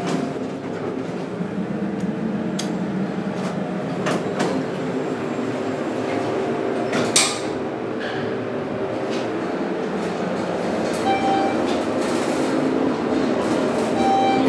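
Schindler traction elevator car travelling down, a steady rumble and hiss of the ride with a few scattered clicks. A short electronic beep sounds near the end.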